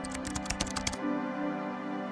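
Computer keyboard typing: a quick run of about a dozen keystrokes that stops about a second in, over steady background music.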